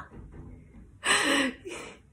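A woman's laughter trailing off into a loud, breathy gasp about a second in, followed by a shorter, softer one.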